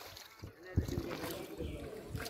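Water splashing at the edge of a pond beside a fishing net, with a sudden dull thump just under a second in.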